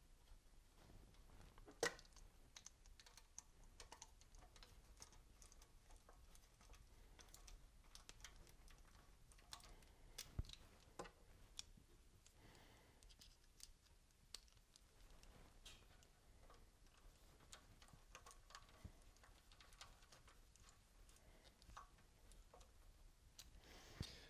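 Near silence with faint, scattered clicks and light taps as small screws and hand tools are handled and fitted into the compressor's metal casing, one click a little louder about two seconds in.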